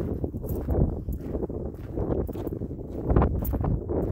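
Footsteps of a person walking: an uneven run of low thuds with rustling, the loudest about three seconds in.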